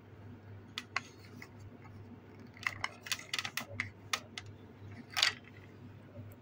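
Small hard plastic clicks and taps from a My Little Pony playhouse's toy vanity as it is handled and its tiny plastic drawer is pulled open, with a dense run of clicks in the middle and one louder short scrape near the end.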